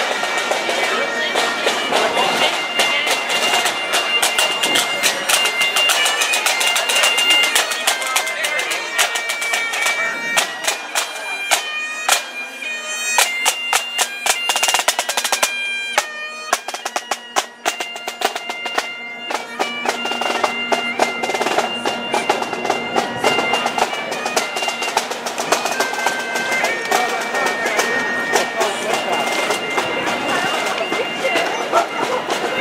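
Highland bagpipes playing a march tune over their steady drone, with snare drum strokes from a pipe band.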